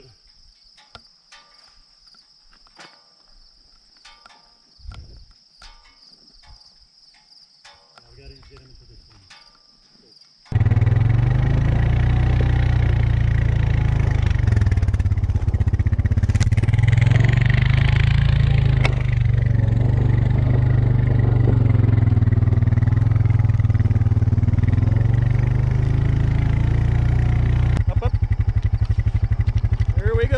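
Crickets chirring steadily with a few faint clicks, then, about ten seconds in, the small engine of a farm bike cuts in suddenly and runs steadily and loudly, turning to a fast even pulse near the end.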